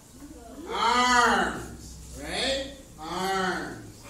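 A person's voice making three long, drawn-out calls, each rising and then falling in pitch; the first is the loudest and longest.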